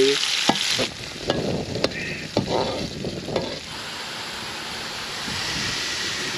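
Sliced onions and cumin seeds sizzling in ghee in an aluminium karahi, being browned. From about a second in, a metal slotted spoon scrapes and clicks against the pan in a few quick stirring strokes, then the frying goes on steadily.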